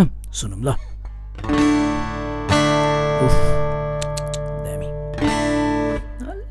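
Acoustic guitar strummed three times, about a second and a half in, again a second later and near the end, each chord left ringing. A steady low electrical hum runs underneath.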